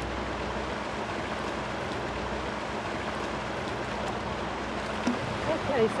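A steady, even rushing noise, like running water or wind, with a low rumble beneath it. A woman's voice begins speaking near the end.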